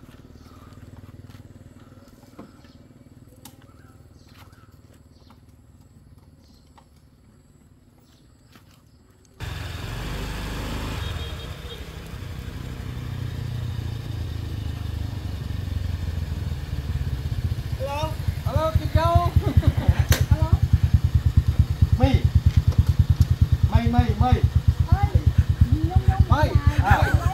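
Faint clicks and handling sounds, then, about nine seconds in, the steady low running of motor scooter engines begins, with a fast even pulse that grows louder toward the end. Brief voices come in over it.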